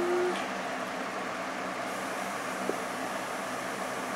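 Steady noise of an electric fan running, with one faint click near the middle.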